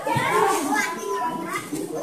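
Overlapping chatter of children's and adults' voices.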